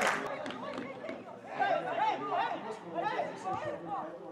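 Several voices calling and shouting across a football pitch, coming in about a second and a half in. A burst of clapping dies away at the start.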